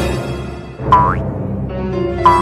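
A cartoon spring 'boing' sound effect, once about a second in, with a short upward-bending twang, marking a hop of the shrouded pocong ghost. Under it runs sustained background music.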